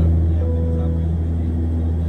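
Saab 340 turboprop engines and propellers, a steady low-pitched drone heard from inside the cabin during the approach descent.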